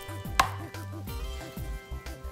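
A glass measuring cup knocks once, sharply, against a plastic mixing bowl about half a second in as the last of the chicken broth is poured out, followed by a few lighter ticks over a low steady hum.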